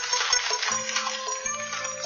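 Instrumental show music with many bright, high sustained tones, and a low held note coming in under them about two-thirds of a second in.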